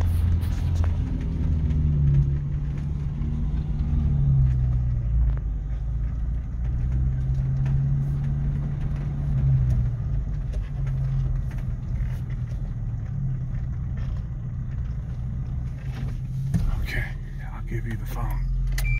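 Car engine running at low speed, heard from inside the cabin while the vehicle creeps along and pulls up to park. The hum rises and falls slightly in pitch, and a few short clicks come near the end.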